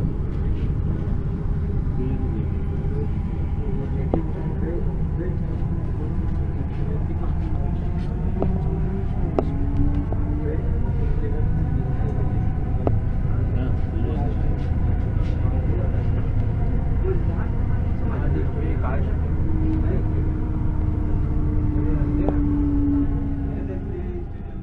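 Hyundai Rotem Hyderabad Metro train heard from inside the coach as it runs along the elevated line and slows into a station. There is a steady low rumble, with an electric whine of several tones that slowly shifts in pitch, and a few sharp clicks.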